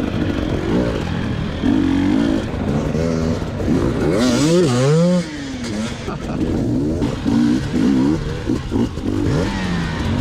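Two-stroke KTM 250 EXC enduro bike engine being ridden off-road, revving up and down with the throttle over and over, with a bigger rev climbing about four seconds in.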